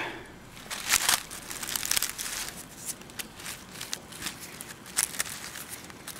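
Dry leaf litter and grass rustling and crackling as a hand handles a box turtle in it, in scattered short crackles, the loudest about a second in and again near the five-second mark.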